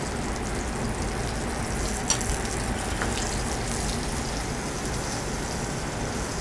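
A slice of foie gras sizzling steadily as it gets a hard sear in a hot sauté pan over a gas flame. There is a faint tick about two seconds in.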